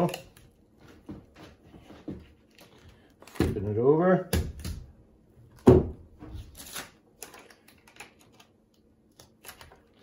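Hands handling a replacement sealed lead-acid UPS battery pack and its plastic cases on a table, with scattered light clicks and taps and one sharp knock a little before six seconds in.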